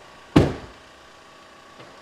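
The driver's door of a VW Crafter van slammed shut once, about a third of a second in, with a short ring-out. The van's engine idles quietly underneath, kept running by the run lock with the key out of the ignition.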